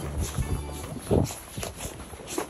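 Footsteps of several people walking in boots on a snow-covered road, a few uneven steps, under background music with steady low notes.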